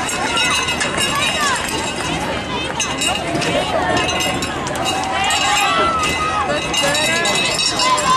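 A group of football players and coaches talking and calling out over one another in an overlapping babble of voices, with no single voice standing out.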